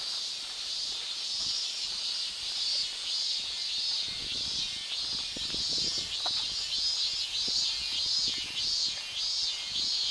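Cicadas singing: a steady high buzz that swells in pulses about twice a second and grows stronger in the second half.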